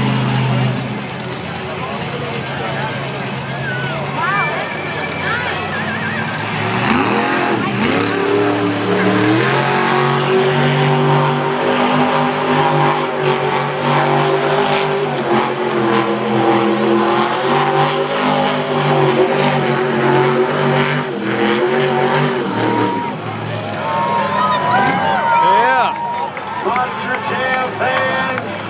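Monster truck's supercharged V8 engine revving hard through a donut run, its pitch rising and falling over and over, with voices heard near the end.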